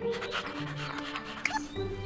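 Cartoon background music with held notes. About half a second in, a short, breathy, rhythmic vocal sound like a laugh or a pant runs for about a second.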